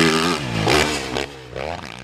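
Motocross bike engine revving in a few blips, each swell weaker than the last.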